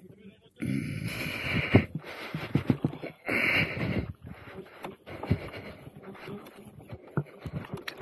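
Irregular rushes of wind noise on the microphone and a few small knocks while riding an electric unicycle over a dirt and grass path.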